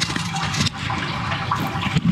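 Water rushing steadily along the open channel of a sewer manhole, the drain flowing freely after a blockage was cleared.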